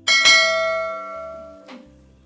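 A single bell-like chime struck once, ringing with many tones at once and fading away over about a second and a half.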